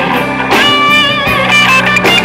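Live rock band with an electric guitar playing a lead line over bass and drums; from about half a second in, the guitar holds high notes that bend and waver in pitch.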